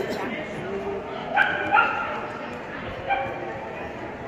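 A dog giving short, high-pitched barks: two in quick succession about a second and a half in, and a third about three seconds in, over background voices.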